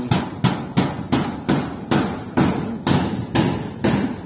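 Hammer blows on corrugated galvanized-iron fence sheeting being fixed to a steel frame, struck in a steady rhythm of about three a second.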